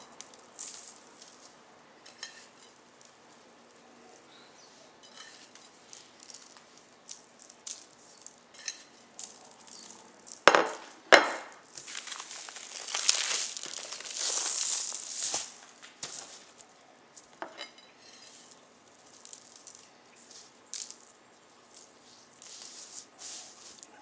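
Hands sprinkling a spice rub onto a slab of cured pork belly and pressing it in, on a sheet of paper: faint scattered taps and paper rustling, two sharp clicks about ten and eleven seconds in, then a few seconds of louder rustling.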